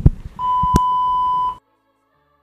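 A couple of sharp clicks, then a steady electronic beep at a single pitch lasting about a second, which cuts off suddenly.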